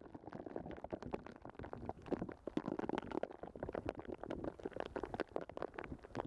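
Underwater pond sound picked up by a submerged camera: a dense, irregular crackle of small clicks and gurgles, with no steady tone.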